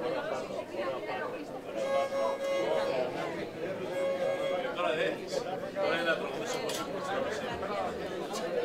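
Pontic lyra sounding a few short held bowed notes at one pitch, quiet under the chatter of the crowd.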